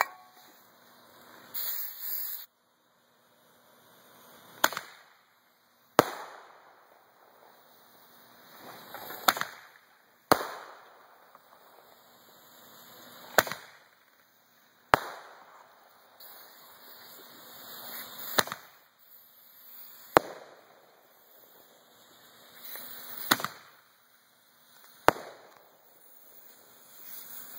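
Roman candles firing: about ten sharp pops, mostly in pairs a second or two apart, each preceded by a building hiss as the tube burns. A short loud hiss comes about two seconds in.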